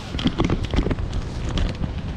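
Wind rumbling on the microphone of a handheld camera over street noise, with irregular clicks and knocks as the camera is handled and turned around.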